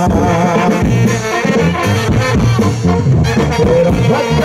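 Mexican banda music played over a dance's sound system, with brass and a steady stepping bass line, an instrumental stretch between the sung verses of a corrido.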